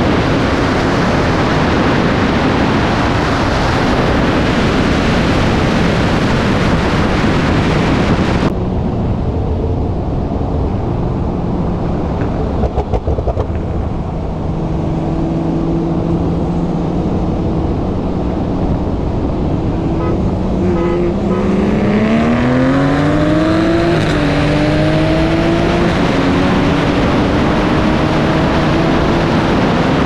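Wind and road noise rush past a car-mounted camera at speed and drop away suddenly about a third of the way in. A Porsche 911 Turbo's twin-turbo flat-six then drones steadily. About two-thirds in it revs up in rising pitch, with an upshift partway through, as the car accelerates hard.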